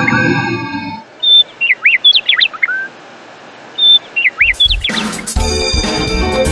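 Recorded bird chirps: two groups of quick rising-and-falling tweets. For the first second they sit over a held musical chord that then stops, and a music track comes in about five seconds in.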